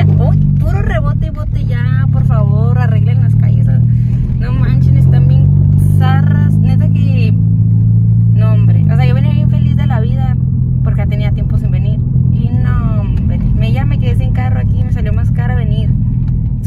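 Car engine and road noise heard inside the cabin while driving: a steady low hum that shifts slightly in pitch about nine seconds in.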